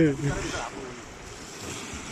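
Steady wind on the microphone and small waves lapping at the shore, after the fading end of a man's laugh at the very start.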